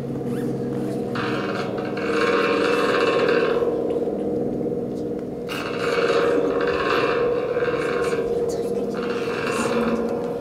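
Experimental soundscape played on Baschet sound structures: sustained, droning metallic tones, with a hissing wash that swells in three times.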